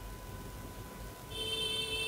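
Quiet room noise with a faint steady whine. About two-thirds of the way in, a sustained electronic ringing tone with several high pitches starts and holds.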